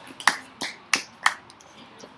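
A handful of scattered, sharp hand claps from a small audience, the last of the applause dying away after a song, stopping a little past halfway.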